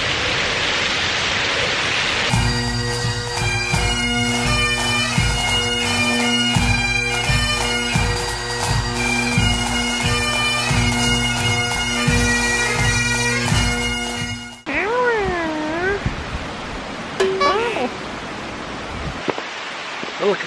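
Bagpipe music, steady drones under a chanter melody, starts suddenly about two seconds in and cuts off abruptly near fifteen seconds. Before it comes a steady rushing noise from the garden waterfall; after it, a few wavering, gliding tones.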